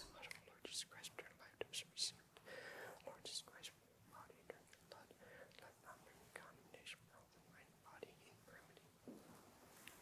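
Near silence: a man's faint whispering, with scattered small clicks and taps from the chalice and paten being handled on the altar.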